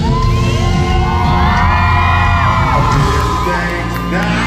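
Concert crowd screaming and cheering, many high voices rising and falling at once and fading after about three seconds, over the live band playing steadily underneath.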